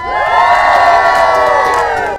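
A group of people cheering together, many voices shouting at once in one long, held cheer.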